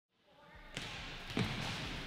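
Large gymnasium's room sound fading in: a steady low hum, with a sharp knock under a second in and another about a second and a half in, and faint voices near the end.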